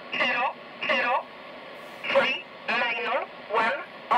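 Numbers station E07 on 4505 kHz, played through an Eton Satellit 750 shortwave receiver's speaker: a voice reads out single words, most likely digits, one at a time with short gaps between them, over steady shortwave hiss. This is the station's null message, sent when there is no traffic.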